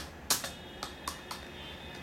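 Keys clicking on a wireless computer keyboard as someone types: five or six separate keystrokes in the first second and a half, the first of them the loudest.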